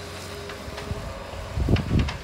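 Skid-steer loader engine running steadily in the distance, with wind rumbling on the microphone from about one and a half seconds in.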